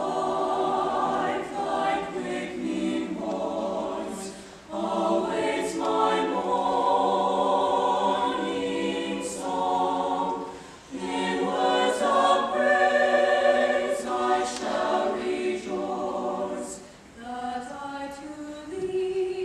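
Mixed-voice chamber choir singing in harmony, in long sustained phrases with brief breath breaks about every six seconds.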